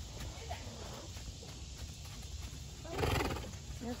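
A horse blowing out hard through its nostrils: one short, fluttering snort about three seconds in, over a low steady rumble.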